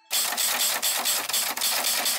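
Loud, harsh rattling noise starting suddenly just after the cut, pulsing evenly about seven times a second: an edited-in transition sound effect.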